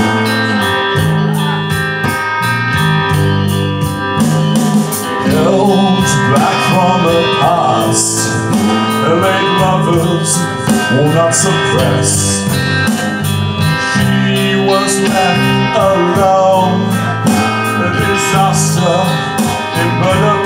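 Live band playing an instrumental passage of a song: electric bass, electric guitar and drums, with a steady cymbal beat and melodic lines bending in pitch over the top.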